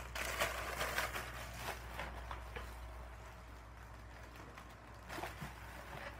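Faint rustling and light clicks of a mail package being handled and opened, strongest in the first couple of seconds, over a steady low hum.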